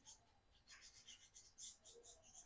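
Near silence: room tone with faint, high, scratchy rustling in the second half.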